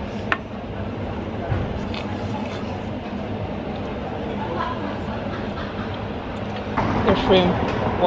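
Steady street background noise with people's voices mixed in, and a voice speaking up near the end.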